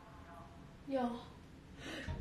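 A person's voice making two short vocal sounds about a second apart, each sliding down in pitch.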